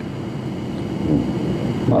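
Low rumbling background noise during a pause in a conversation, with a man starting to speak at the very end.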